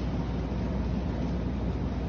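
Shopping cart wheels rolling over a hard store floor, a steady low rumble.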